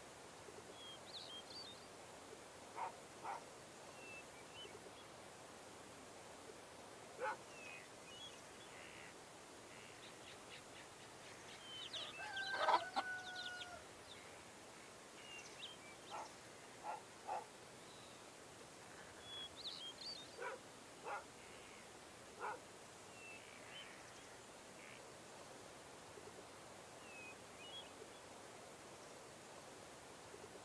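Quiet hand stitching on a stamped cross-stitch canvas: scattered faint ticks and pops of the needle going through the fabric and of the thread being pulled. Faint short chirps sound in the background throughout, and a short two-tone honk is the loudest sound, about halfway through.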